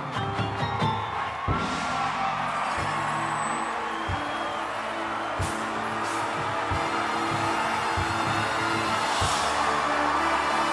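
Drum and bugle corps brass holding sustained chords, with low drum hits about every second and a quarter, after a quick run of percussion strikes in the first second. A crowd's cheering grows underneath, and the whole sound swells slightly toward the end.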